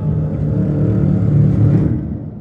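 Loud, low rumbling drone from a horror trailer's score, swelling slightly and cutting off near the end.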